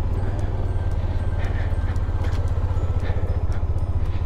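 Motorcycle engine running at low speed, a steady, evenly pulsing low rumble, as the bike rolls slowly along a gravel track.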